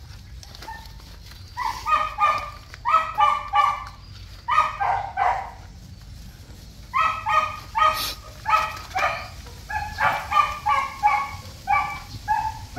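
Small puppy yelping and crying in repeated clusters of short, high-pitched yelps, in distress as it is held down.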